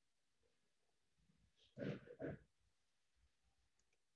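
Near silence: room tone, broken about two seconds in by a brief two-part vocal sound from a person.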